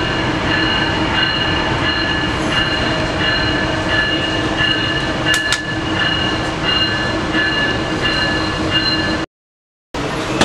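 Inside a Tri-Rail commuter train car pulling into a station: a steady running rumble with a high whine of several tones that pulses on and off, and two sharp clicks about five seconds in. The sound cuts out completely for most of the last second.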